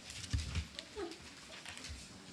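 Small room noises: a dull low thump, then a brief falling squeak and faint scattered clicks.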